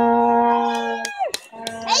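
Plastic vuvuzela-style horn blown in one long steady note that cuts off about a second in and sounds again just before the end. It is mixed with spectators' cheering shouts and a few sharp claps in the gap.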